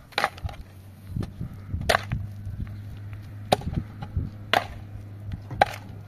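Shovel blade striking and digging into stony earth, five sharp strikes about a second apart.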